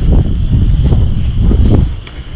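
Wind buffeting a camera microphone outdoors: a loud, uneven low rumble with no voices.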